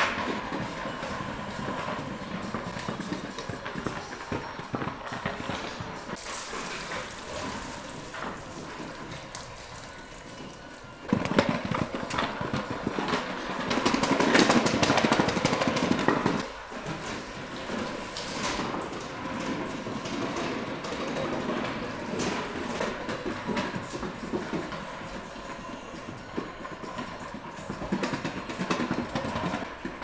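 A child's kick scooter rolling over a tiled floor, its small wheels rattling across the tile joints. The sound grows louder for a few seconds starting about a third of the way in, then drops back abruptly.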